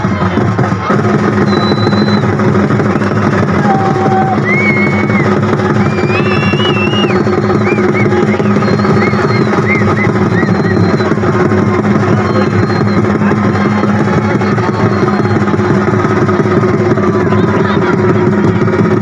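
Loud festival music with fast, continuous drumming over a steady droning note, mixed with crowd voices.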